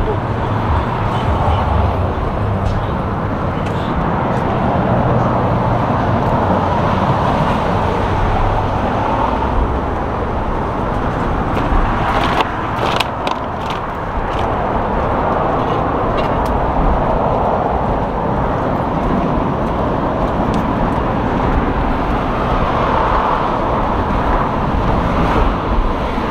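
Steady road traffic noise from cars on a city street, heard continuously, with a few brief clicks about halfway through.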